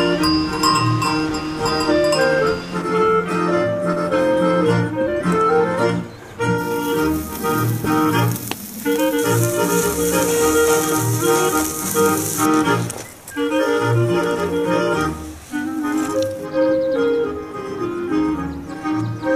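Swiss Ländler folk music, a reedy lead melody over a bass that pulses evenly. From about six to twelve seconds in, a steady hiss lies over the music.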